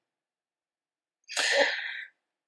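About a second of near silence, then a short breathy vocal burst from a person, under a second long.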